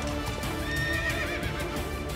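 A horse whinnying about a second in, with hooves clopping, over background music.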